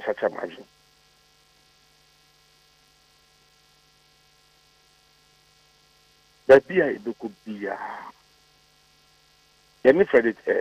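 Mostly a long pause filled only by a faint steady electrical hum, with brief bursts of speech over a telephone line at the start and again for about a second and a half past the middle.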